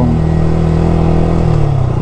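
Motorcycle engine running at a slow, steady cruise, its note dipping slightly in pitch near the end.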